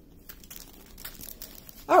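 Small plastic bags of rhinestone drills crinkling faintly as they are handled and set down.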